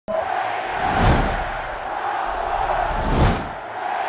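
Intro sound design of a stadium crowd roar under two whooshes, one about a second in and another just past three seconds, each with a low rumble. Short bright tones sound at the very start.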